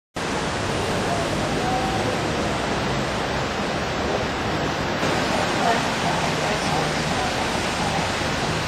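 Steady city street ambience: an even rushing noise of traffic and air on the microphone, with faint voices in it.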